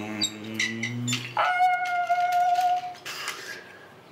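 A man making car noises with his voice while playing with a toy car: a low, steady hum rising slowly in pitch, then after a short break a higher tone held for about a second and a half.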